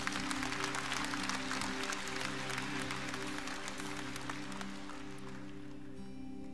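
Congregation clapping over a sustained chord held by the worship band, the applause strongest in the first seconds and dying away near the end.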